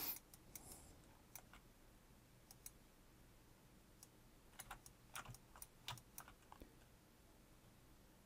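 Near silence with faint, scattered clicks of a computer mouse and keyboard, about fifteen of them, coming closer together a little past the middle.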